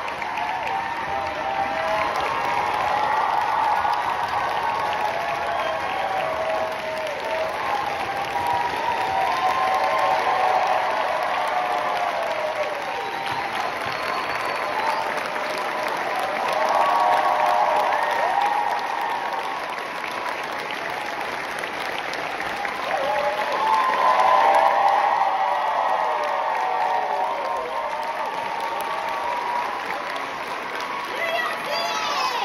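Theatre audience applauding and cheering, with shouts and whoops over steady clapping. It swells a few times.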